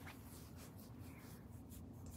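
Faint scratchy rustling and rubbing close to the microphone, over a low room hum.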